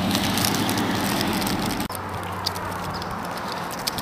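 Handling noise from a handheld camera: crackling and rustling as fingers rub over the body and microphone. A low steady rumble under it drops away about two seconds in.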